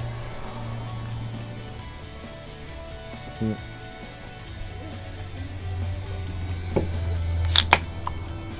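Background music plays throughout. About half a second before the end, an aluminium beer can is opened, giving a short, sharp crack and hiss.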